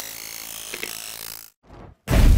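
Animated outro end-card sound effect: a steady noisy swish with faint tones in it that cuts off suddenly about a second and a half in, followed by a short blip.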